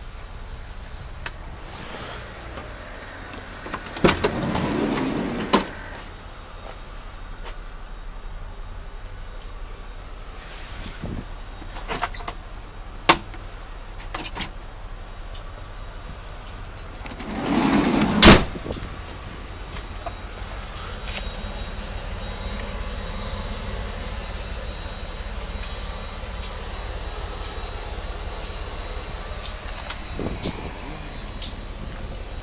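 Van door mechanisms: an electric motor whirs for about a second and a half between two clicks a few seconds in, then whirs again about eighteen seconds in and ends in a loud slam as a door shuts. Light clicks and knocks fall in between.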